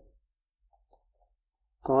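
A few faint computer-keyboard clicks from typing, about a second in, in otherwise near silence.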